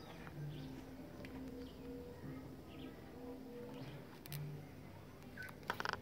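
Faint background sound: a few small bird chirps over the low, changing notes of distant music. A brief clatter of handling comes near the end.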